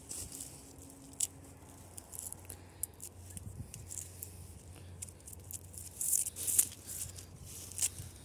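Fingers scratching and picking at rough tree bark: an irregular run of short, dry crackles and taps as loose bark flakes away, loudest about six seconds in.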